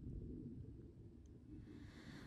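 Near silence: a faint low rumble, with a faint hiss swelling near the end.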